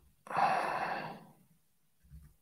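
A man's single long breathy exhale close to the microphone, starting about a quarter second in and fading away after about a second.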